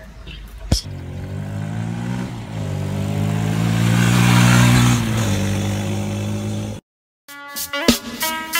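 Kawasaki KLX150's 144 cc air-cooled four-stroke single-cylinder engine revving as the trail bike is ridden on dirt: the engine note climbs, dips and climbs again about two and a half seconds in as it shifts up, and eases off about five seconds in. It cuts off suddenly near the end, and music starts.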